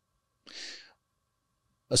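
A single short breath, about half a second long, taken at a close microphone. A man's voice starts speaking right at the end.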